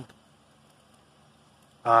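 Near silence with faint background noise in a pause between sentences of a man's speech, which trails off at the start and resumes near the end.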